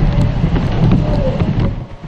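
Strong typhoon wind gusting against the microphone with driving rain, a loud low rumble that drops away just before the end.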